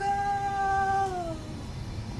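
A singing voice holding one long note that slides down in pitch after about a second.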